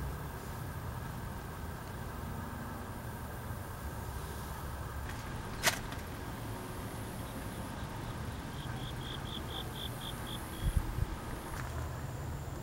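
Quiet outdoor background with a steady low rumble, a single sharp click about halfway through, and a short run of rapid high chirps, about six a second, near the end, followed by a few soft low thumps.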